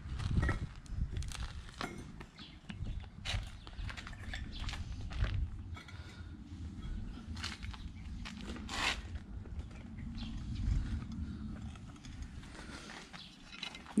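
Bricklaying sounds: scattered short clicks and scrapes as hollow ceramic bricks are handled and set in mortar, over a low rumble.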